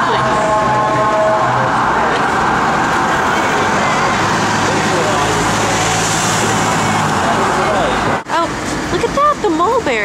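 Road traffic on a busy city street, a steady rush of vehicle noise with a double-decker bus's engine humming low through the middle. A sudden break a little after eight seconds gives way to voices.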